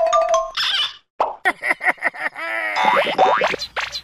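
A tinkling mallet-instrument tune in children's music stops about half a second in, and a rapid string of short cartoon sound effects follows, each sliding in pitch, thickening into a cluster of overlapping glides near the end.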